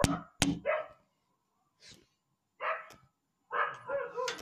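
A dog barking, several short barks spaced across a few seconds.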